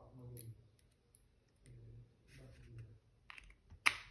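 Sharp clicks as small parts of an opened smartphone are worked with a screwdriver during reassembly, two of them near the end, the second the loudest. A faint murmur of voices runs underneath.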